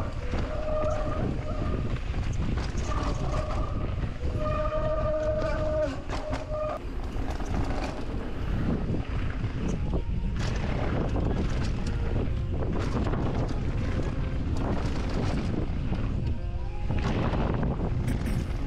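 Mountain bike riding down a rough trail, heard from a camera on the bike or rider: wind rushing over the microphone, with steady rumble and irregular knocks and rattles from the bike over the ground.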